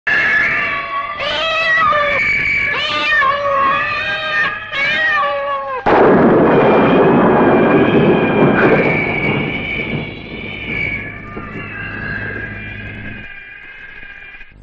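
Several wavering, gliding animal yowls, one after another. About six seconds in they are cut off by a sudden loud crash of noise that slowly dies away under steady high tones.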